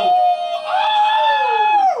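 A man's long, high-pitched drawn-out "ooooh" of excitement, held as one note that steps up in pitch about half a second in and slides down near the end.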